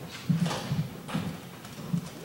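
Irregular soft thuds and knocks, two or three a second, with a few sharper clacks, the loudest about a third of a second in: people moving about a room, like footsteps and furniture being shifted.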